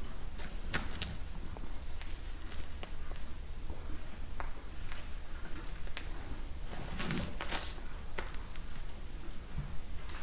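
A young Dexter calf shifting its hooves on a straw- and gravel-strewn barn floor and nosing at a leather work glove: scattered soft rustles and clicks, with a louder rustling burst about seven seconds in, over a steady low hum.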